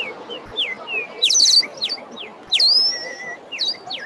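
Several birds chirping: a quick run of short falling chirps, with two louder bursts about a second and a half and two and a half seconds in, the second drawing out into a whistle.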